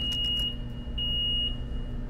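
Two electronic beeps at one high pitch, each about half a second long and a second apart, over a steady low hum.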